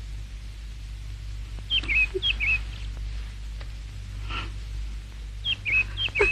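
Steady low hum on an old film soundtrack, with a few short, high squeaky chirps in pairs about two seconds in and again near the end.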